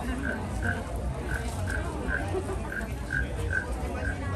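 Short croaks at a steady pitch, repeating about two or three times a second, from a carved wooden frog rasp being stroked with its stick.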